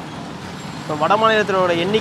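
A man speaking in Tamil, his talk resuming about a second in after a short pause, over steady street traffic noise.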